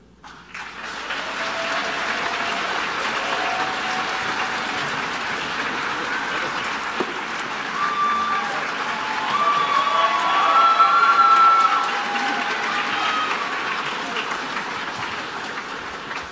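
Concert audience applauding after a choir's song, starting about half a second in, with voices cheering over the clapping and the applause swelling a little past the middle.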